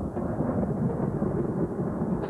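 Thunder rumbling, a steady low roll with no sharp crack.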